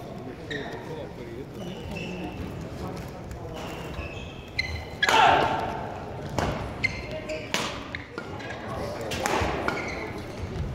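Badminton rally: sharp racket strikes on the shuttlecock several times in the second half, the loudest about five seconds in. Short squeaks of court shoes are heard, over a murmur of spectator voices in a large hall.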